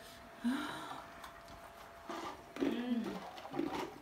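Short wordless vocal sounds from people suffering the heat of very hot wing sauce: brief falling-pitch groans and hissing, sharp breaths.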